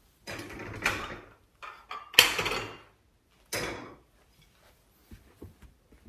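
A few scraping, sliding and knocking noises as china plates are handled and moved on a wooden cabinet shelf. The loudest is a sharp knock followed by scraping about two seconds in.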